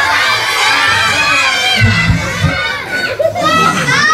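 Audience of young children shouting together, many high voices at once, dying down after about three seconds.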